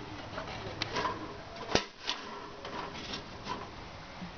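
Venetian blind slats handled with a finger, giving a series of light clicks and taps, the loudest a little under two seconds in.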